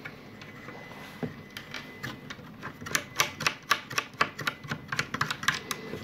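Small metal nuts being put back on and spun by hand along the long bolts of a propeller hub. The result is a run of quick, irregular light metallic clicks that starts about a second and a half in.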